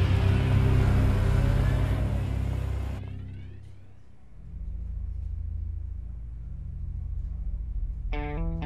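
Background score: loud, dense, driving music that stops abruptly about three seconds in, followed by a low sustained drone.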